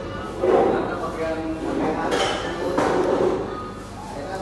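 Short bursts of a person's voice, three of them about a second apart, over a steady background hum.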